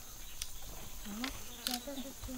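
A steady high-pitched drone of insects in the surrounding vegetation, with a few light clicks in the first second and a woman's voice starting about a second in.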